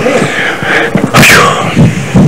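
Wordless vocal sounds: voices calling out, with one sharp, breathy shout a little past a second in.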